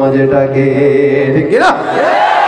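A man's voice chanting Bengali verse in the sung style of a waz sermon, holding one long steady note and then sliding up in pitch near the end.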